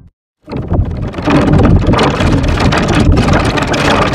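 Heavily distorted, effects-processed logo audio: after a brief gap of silence, a loud, dense, noisy rumble with a steady low hum underneath.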